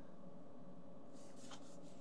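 Quiet room tone with a faint, brief rubbing sound a little over a second in.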